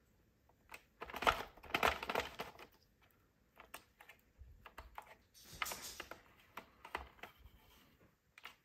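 Scattered small clicks and light rustling as yarn stitches are lifted off the plastic pegs of a circular knitting machine and pulled through with a needle, loudest in a couple of short clusters.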